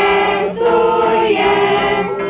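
Women's folk choir singing a Christmas carol unaccompanied, in long held notes that move to new pitches about half a second in and again partway through.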